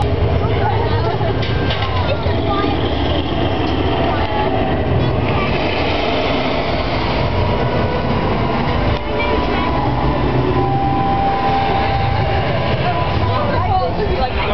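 Studio tour tram running with a steady low rumble as it moves past the set, with voices over it.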